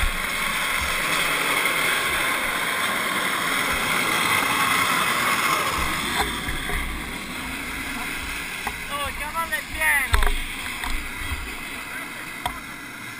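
Wheels of unpowered gravity karts rolling down asphalt past the microphone, a steady rushing noise that eases off about six seconds in. Near the end come a few short rising-and-falling cries and a sharp knock.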